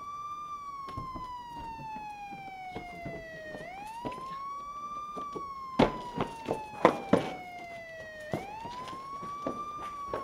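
A siren wailing in a repeating cycle: each sweep rises quickly in about a second, then falls slowly over about three seconds, twice over. A cluster of sharp knocks sounds about six to seven seconds in.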